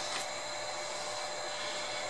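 Steady background hiss with a faint, thin high-pitched whine running through it.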